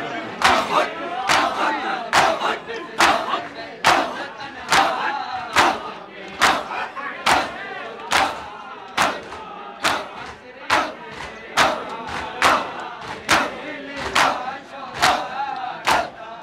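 A crowd of men beating their chests in unison with open palms (matam), one loud collective slap a little more than once a second, with crowd voices between the strikes.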